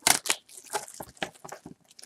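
Clear plastic shrink wrap being torn and peeled off a cardboard trading-card box: a quick run of crackling and crinkling, loudest right at the start.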